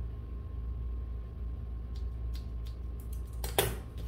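Scissors snipping through a held section of hair a few times, faint against a steady low hum, then one sharp click near the end.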